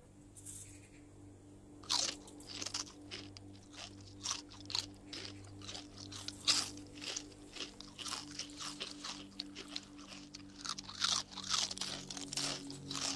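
A person eating something crunchy: quick, irregular crunches and bites that start about two seconds in and keep coming.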